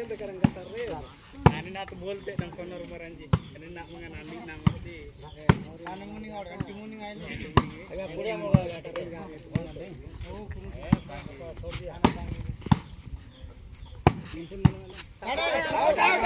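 Sharp thuds of a volleyball being struck, a dozen or so at irregular gaps of about a second, over the voices of players and onlookers talking and calling out. A loud shout comes near the end.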